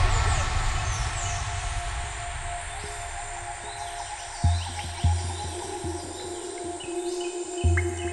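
Breakdown of a hardstyle track: the loud full section dies away into held synth tones with short, high bird-like chirps over them. Low kick-drum hits come back about four and a half seconds in and again near the end.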